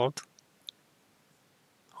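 The tail of a spoken word, then a quiet stretch with a few faint, short clicks, before speech resumes near the end.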